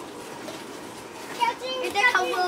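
A child's high-pitched voice, starting about one and a half seconds in after a short lull of faint background noise.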